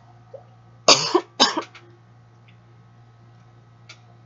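A person coughing: a short fit of two or three coughs about a second in.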